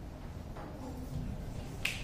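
Low steady room hum with a single short, sharp click near the end.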